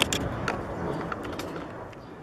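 Outdoor background noise with a few sharp clicks and knocks, fading out steadily toward the end.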